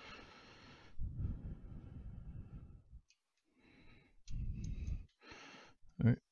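A man breathing and sighing close to the microphone, with low rustles and soft knocks from handling small metal parts on a rotary attachment.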